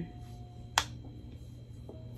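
One short, sharp click a little under a second in, over a low steady hum.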